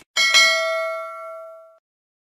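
Notification-bell sound effect from a subscribe-button animation: a bright bell ding struck twice in quick succession, just after a mouse click, ringing out and fading over about a second and a half.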